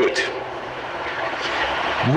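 A pause in a man's lecture: the end of a spoken word fades, leaving the steady hiss and low hum of an old audiocassette recording of the room.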